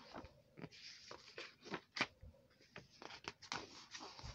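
Pages of a thin paperback picture book being flipped by hand: a run of quick, faint paper rustles and flicks, with one sharper crisp flick about two seconds in.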